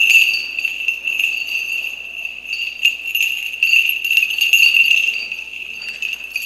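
Small bells on the chains of a swinging censer (thurible) jingling, a continuous bright ringing broken by repeated metallic clinks with each swing.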